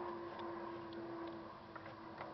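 A faint steady hum with a few soft ticks.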